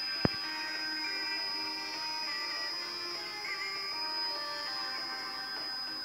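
Music received on shortwave and played through an Eddystone Model 1001 receiver's speaker, under a steady high-pitched whistle. A single sharp click about a quarter second in.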